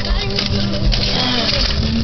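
Steady road and engine noise heard inside a moving car, with music playing.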